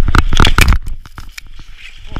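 Skis scraping and crunching over packed snow, heard through an action camera's microphone with a low wind rumble. A quick run of loud, crackling scrapes in the first second eases off into quieter scraping.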